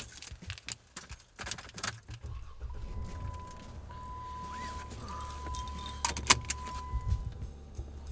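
Keys jangling and clicking inside a car's cabin. About halfway through, a steady electronic tone from the car sounds for several seconds, over a low engine hum that comes in a little earlier.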